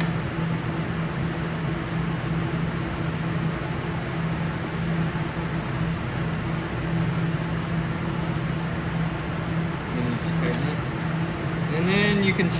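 Steady drone of running lab machinery with a constant low hum, and one brief click about ten seconds in.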